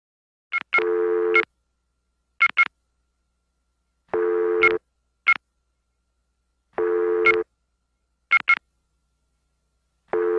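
Electronic telephone-like tones: a buzzy tone of about two-thirds of a second repeats roughly every three seconds, with short high beeps, often in pairs, between the tones.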